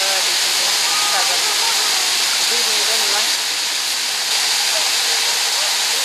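A steady, loud hiss like rushing water, with faint voices underneath.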